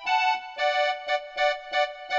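Electronic keyboard played with the right hand: a melody of short notes, often two at a time, in the middle register, at about three notes a second.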